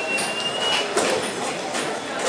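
Bowling alley din: balls rolling and pins clattering on nearby lanes, with many short sharp clacks. A thin high tone fades out about a second in.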